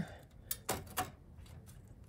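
A few sharp little clicks and knocks of a plastic power plug being worked onto an IDE-to-SATA adapter inside a computer case: three in quick succession, about half a second to a second in.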